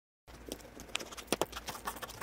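Sparse, irregular sharp clicks and crackles over a faint low hum, starting after a short moment of silence: a sound effect from a title sequence, before the theme music comes in.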